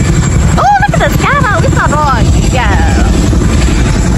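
Tandem-rotor CH-47 Chinook helicopter flying low overhead, its rotors beating in a loud, steady low throb.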